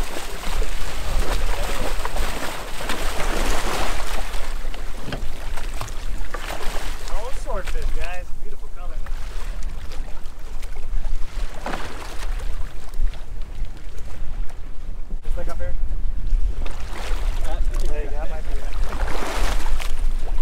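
Wind buffeting the microphone over water splashing and sloshing against a boat's hull, with a burst of splashing as a fish thrashes at the surface near the start. Muffled voices come through now and then.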